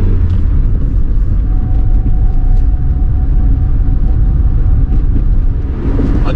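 Hillman Imp's rear-mounted aluminium four-cylinder engine running as the car drives along, heard from inside the cabin as a loud, steady low rumble, with a faint steady whine for about two seconds in the middle.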